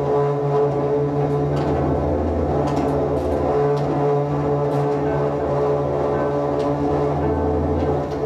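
Cello bowed in low, sustained droning notes that layer into a dense drone, its lowest note easing off near the middle and returning.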